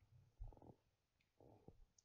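Near silence in a pause between speech, broken only by two faint, brief low sounds about half a second and a second and a half in.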